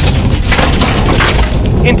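Onboard a Subaru STI rally car slowing through a tight turn on loose gravel: stones clatter and crackle against the underbody and wheel arches over the engine's steady running.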